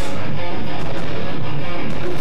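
Live rock band playing loud, guitar-led music, with strummed electric guitar at the front of the sound.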